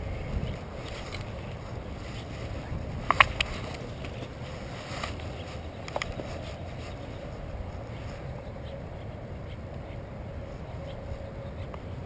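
Steady low outdoor rumble, with a few brief clicks about three seconds in and another about six seconds in.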